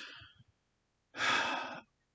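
A man's single loud, breathy sigh or sharp breath, lasting under a second, about a second in.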